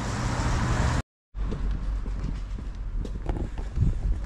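Town street ambience with road traffic, broken about a second in by a brief silent dropout where the recording cuts. After it comes quieter outdoor noise with a low rumble and a few soft knocks.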